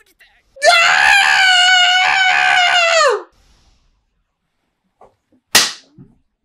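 One long, high-pitched scream of about two and a half seconds that drops in pitch as it trails off. Near the end comes a single sharp slap.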